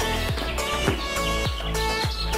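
Background music with a steady beat of deep bass hits that drop in pitch, about two a second.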